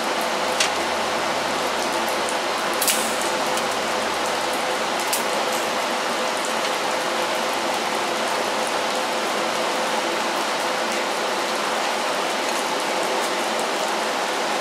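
Steady hiss of rain on the shop roof, with a TIG welding arc running on thin sheet steel beneath it and a few faint ticks.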